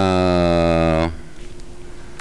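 A man's drawn-out hesitation sound, a flat "ehhh" held on one pitch for about a second mid-sentence while he looks for a figure, then stops abruptly.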